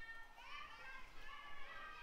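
Girls' voices calling out and chanting, faint and high-pitched, from the players around the diamond.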